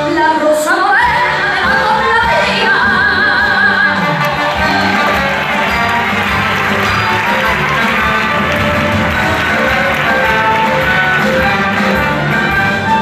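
Copla song with orchestral accompaniment: a woman's voice rises into a held note with vibrato, then the orchestra carries on at full volume.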